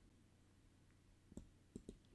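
Three faint computer mouse clicks in the second half, the last two close together, over near silence.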